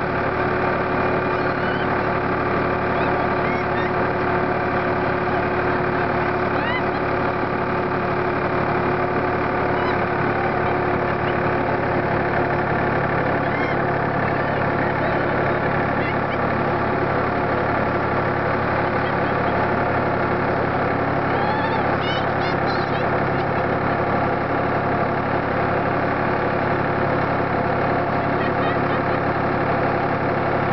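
Tractor engine running at a steady speed, heard close up from on board, as it tows sleds on ropes through snow.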